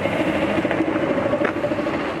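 A car driving along a street, with a steady engine hum and tyre noise.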